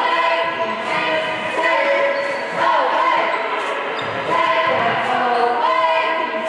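A basketball being dribbled on a hardwood gym floor, a run of regular bounces. Singing voices run underneath throughout.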